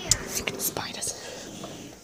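A person's breathy, whispered voice with several sharp clicks in the first second, the loudest just after the start.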